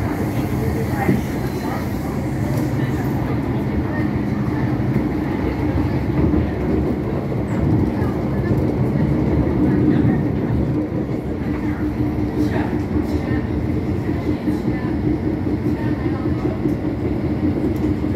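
MTR M-Train electric multiple unit running at speed, heard from inside the passenger car: a steady rumble of wheels on rail with a continuous low hum.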